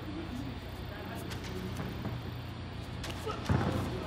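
Audio from a full-contact karate bout: a low steady background with a few soft thuds and slaps, mostly in the second half.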